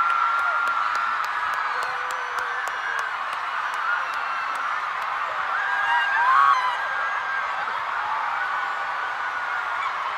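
Stadium crowd of thousands screaming and cheering without a break, a dense wall of high-pitched shrieks that swells briefly a little past halfway.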